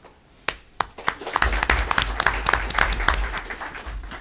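Audience applauding: scattered claps that start about half a second in, thicken, then thin out near the end, with a low rumble under the middle.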